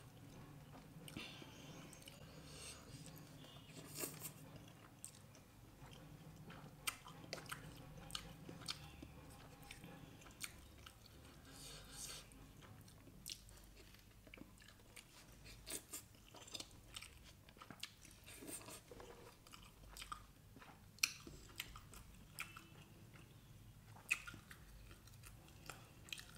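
Close, quiet chewing and wet mouth sounds of someone eating dal and rice, with many scattered small clicks and smacks.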